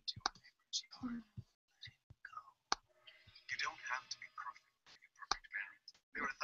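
Faint, low speech with scattered sharp clicks throughout.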